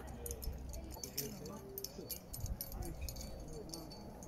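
Climbing hardware (carabiners and quickdraws) clinking lightly in short, scattered metallic clicks, under faint, indistinct voices.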